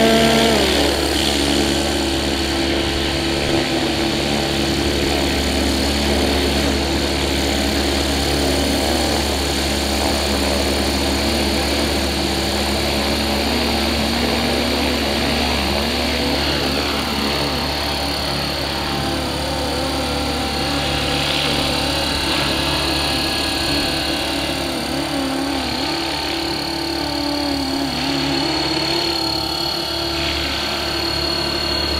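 FLY WING Bell 206 scale RC helicopter running with its rotors spinning, a steady high-pitched whine over a rotor hum whose pitch wavers as the throttle and blades are worked. Its tail rotor has been modified to cut its noise.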